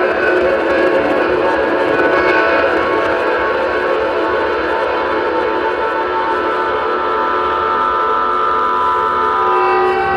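Free improvisation on electronics, guitar and double bass: a dense, sustained drone of many overlapping held tones, horn-like in texture, with a higher tone swelling out of it in the second half.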